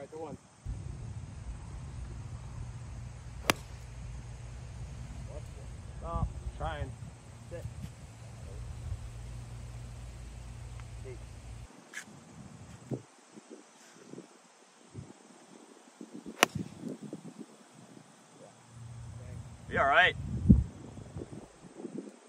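A golf club striking a ball off the tee with a sharp crack, amid wind rumbling on the microphone and a few brief voices.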